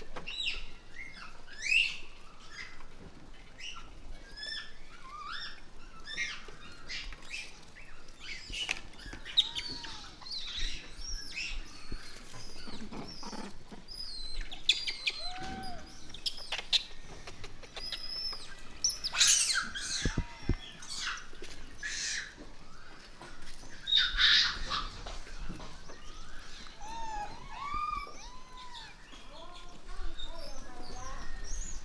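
Japanese macaques calling: many short coo calls, each arched in pitch, overlapping throughout, with louder shrill squeals about two-thirds of the way through and again a few seconds later.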